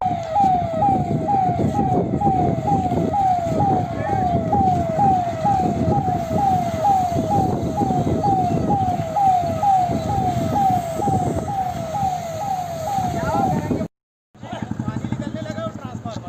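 Fire engine siren sounding a fast repeating wail, each cycle falling in pitch, about twice a second, over a loud rumbling noise. It cuts off suddenly near the end.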